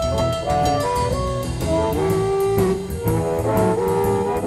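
Electric blues band playing an instrumental break, with a held lead melody line moving in steps over a steady drum beat, bass and guitar.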